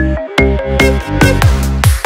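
Vinahouse-style electronic dance remix: a steady kick drum and heavy bass under synth notes, the bass dropping out for a moment just after the start.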